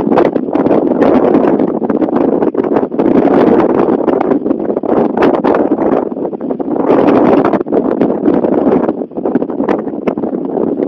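Wind buffeting a phone's microphone on a moving bicycle: a loud rushing noise that surges and dips in gusts, with a few brief clicks.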